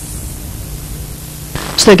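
Steady hiss with a faint low hum from an old broadcast recording, in a gap between sentences. About a second and a half in, louder background noise cuts in and a voice starts speaking near the end.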